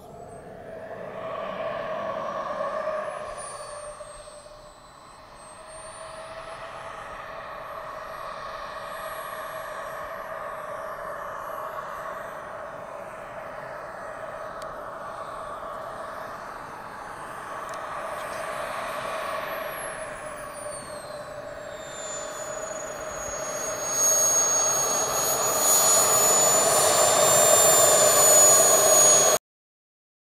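Model jet turbine of a Skymaster F-18C Hornet running as the model taxis, with a high whine that dips and rises in pitch. It grows louder over the last few seconds, then cuts off suddenly near the end.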